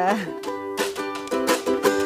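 Ukulele strummed in chords, with a few sharper strokes in the second half.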